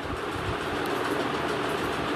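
Steady background noise, an even hiss with no clear pitch or rhythm, rising slightly in level.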